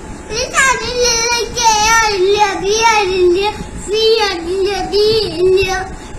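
A toddler's high-pitched voice in long, drawn-out sing-song phrases with short breaks.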